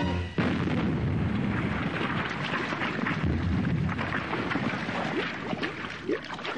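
Cartoon explosion sound effect: a sudden blast about half a second in, then several seconds of dense rumbling and crackling that eases off near the end.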